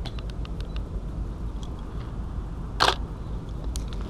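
A DSLR shutter fires once with a loud, sharp click about three seconds in, followed by a smaller click. Before it come a few faint ticks, all over a steady low background rumble.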